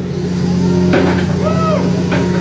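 Steady low drone of a fishing boat's engine and deck hydraulics as a steel-framed cod pot is lowered onto the deck rack, with a light knock about a second in and a brief rising-and-falling tone after it.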